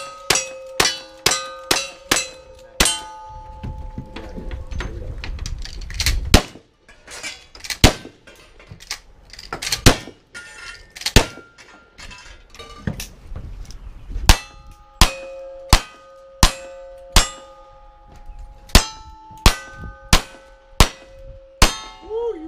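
Gunshots on a cowboy action shooting stage, each hit answered by a steel target ringing. A quick string of shots with ringing plates opens, a few spaced single shots follow in the middle, and an even string of about eleven shots with ringing steel, about two shots every one and a half seconds, runs near the end as the shooter works his single-action revolvers.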